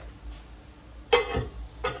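Ceramic kiln shelf being wiggled on its kiln posts before it is lifted out: a sharp grating clink about a second in, then a shorter one near the end.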